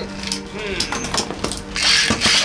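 Spinning Beyblade tops clashing in a clear plastic stadium: a quick run of sharp clicks and knocks from about half a second in, as the tops strike each other and the wall. This is the clash that knocks one top out.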